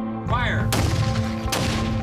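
A hand grenade exploding: two sharp bangs, the first about two-thirds of a second in and the second near the end, with a noisy rush between them, over background music.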